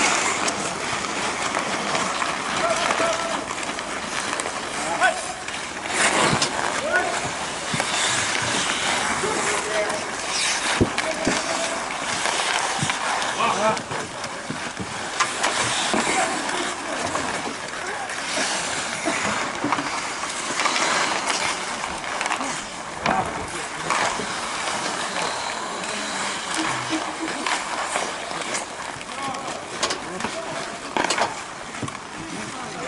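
Ice hockey in play: skates scraping and carving on the ice, with scattered sharp clacks of sticks and puck, and players' voices calling out.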